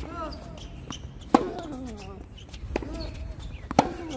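Tennis rally: a racket striking the ball back and forth. There are two loud, sharp hits from the near player, about 1.4 s in and just before the end, and fainter hits from the far side at the start and about 2.7 s in. Each hit is followed by a short sound that falls in pitch.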